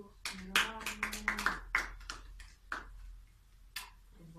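A few people clapping by hand, a quick run of claps that slows and dies out, with one last clap near the end. A voice holds one long note through the first second and a half.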